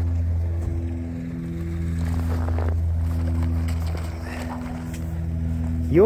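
A vehicle engine idling steadily, an even low hum that does not change pitch.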